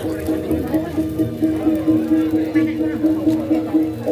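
Jaranan gamelan music playing: a repeating melody of held notes over a steady quick beat.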